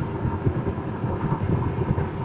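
An SRM X30 V5 van's 1.5-litre turbocharged inline-four engine idling steadily, heard from inside the cab. Faint knocks come as the manual gear lever is moved.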